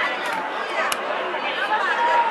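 Several people talking and calling out at once, their voices overlapping, with one sharp click about a second in.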